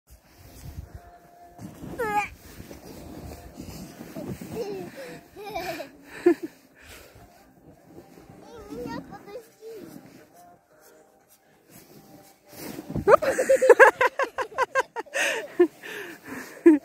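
A small child's voice calling and chattering, with a high gliding squeal about two seconds in, a quieter stretch, and a louder run of talk near the end.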